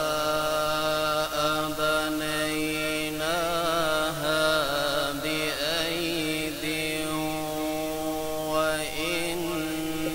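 A male qari chanting Quranic recitation (tilawat) in the melodic tajwid style, amplified through a microphone, in long drawn-out phrases with wavering, ornamented pitch and a couple of brief breaks between phrases.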